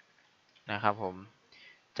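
A man's voice says a short phrase in Thai. Around it, faint clicks of computer keyboard typing.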